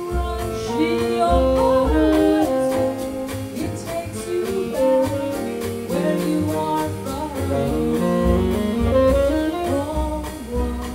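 Live small-group jazz: a female vocalist singing and a tenor saxophone weaving melodic lines over walking upright bass, with drums keeping time on the cymbals.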